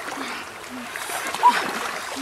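Water sloshing and splashing as two people wade through a waist-deep river, with short voice sounds and one brief, loud rising call about one and a half seconds in.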